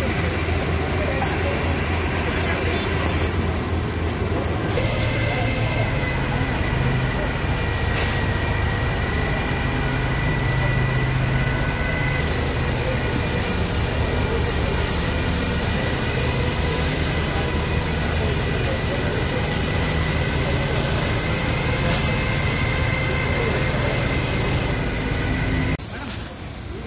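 Fire engine's motor and pump running steadily under load, with a steady high whine, as its hose sprays liquid onto the road.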